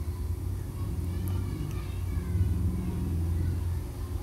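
Low steady background rumble, swelling a little in the middle, with faint voices heard about a second in.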